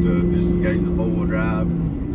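Engine and road noise inside the cab of a 2003 Hummer H2 with a 6.0-litre LS V8, driving at road speed: a loud steady rumble with a low hum that cuts off just before the end.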